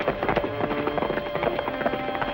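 Rapid hoofbeats of horses being ridden, with background music holding long notes over them.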